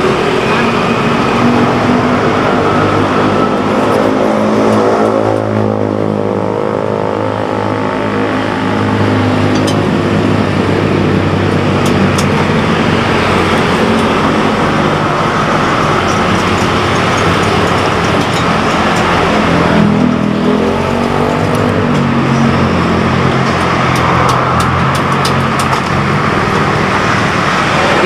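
Busy road traffic passing close by, a steady din of vehicle engines and tyres. The engine notes rise and fall as vehicles go by, with clear pass-bys about six seconds in and again around twenty seconds.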